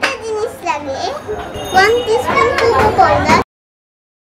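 A young girl talking, her voice cutting off abruptly about three and a half seconds in.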